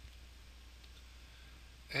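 Quiet room tone with a steady low hum, and a man's voice starting just at the end.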